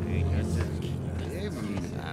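Cartoon soundtrack: background music under indistinct voices and busy ambient sound effects.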